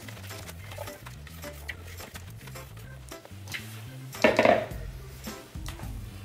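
Silicone spatula scraping thick cake batter out of a plastic mixing bowl into a silicone mould, with small scrapes and clicks of utensil on plastic, over background music. A louder sudden sound comes about four seconds in.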